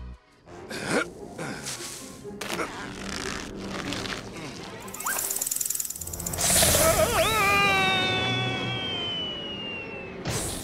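Cartoon sound effects over background music, then a long cartoon scream that wavers and then drops slowly and steadily in pitch: the classic falling yell.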